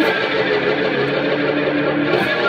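Electric guitar played through a single-rotor Leslie-style rotating speaker cabinet, holding sustained notes that change about a second in.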